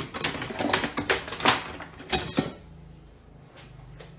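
Kitchen clatter: a quick run of sharp knocks and clinks of utensils and dishes against a pan, dying away after about two and a half seconds into a faint steady low hum.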